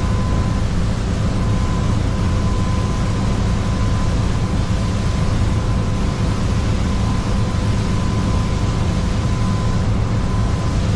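Twin Volvo Penta D4 diesel engines running steadily with the boat under way, heard from the helm as a dense low rumble mixed with the rush of wind and water, with a thin steady whine over it.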